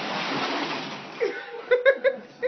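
Chair casters on a cat's home-made PVC wheelchair rolling fast across a tiled floor, a loud steady rolling noise. About a second in it fades and gives way to a person's short chuckles and a couple of sharp clicks.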